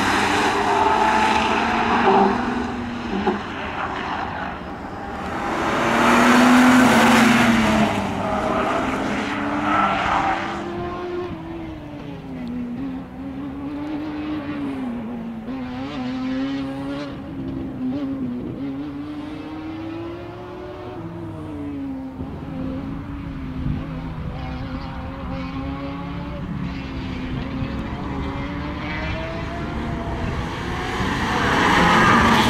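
A BMW E46 saloon's engine revving up and down as the car is driven hard through tight turns, its pitch rising and falling again and again. The sound is loudest with a wide rush of noise near the start and again about six to eight seconds in, then quieter as the car moves farther off.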